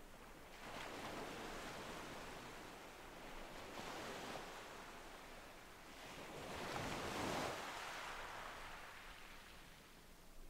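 Faint surf-like ambience: a soft rushing noise that swells and fades three times, the loudest swell about seven seconds in.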